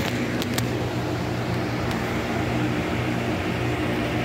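A steady mechanical hum with a constant low pitch, like a running fan or motor, with a few faint clicks in the first two seconds.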